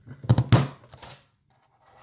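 Stampin' Up! Envelope Punch Board's punch pressed down through folded cardstock: two sharp clacks close together about a third and half a second in, then a softer one about a second in.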